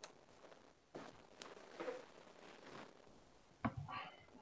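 Faint, scattered clicks and rustles of small handling noise, with a slightly louder knock near the end.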